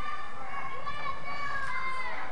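Spectators' overlapping chatter and calls, with children's voices among them, and no single voice standing out.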